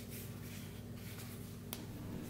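Quiet room tone with a steady low hum, and one small, sharp click near the end as the wristwatch is handled and moved away.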